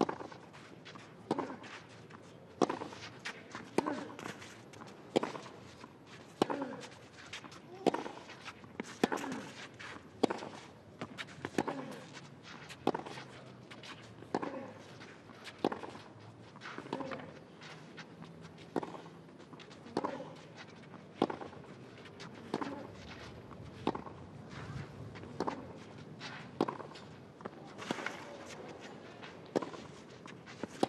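Tennis ball struck by rackets in a long baseline rally on clay, a shot roughly every 1.3 seconds, the two players trading strikes. Many of the shots carry a short grunt from the player hitting.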